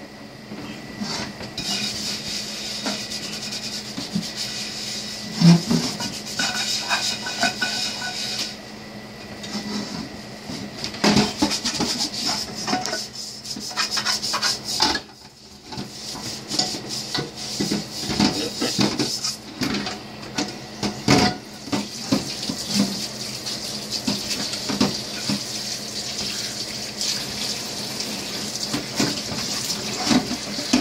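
A brush scrubbing a blackened metal pot in a stainless-steel sink: irregular scraping with knocks and clanks of the pot against the sink. The tap runs near the end as the pot is rinsed.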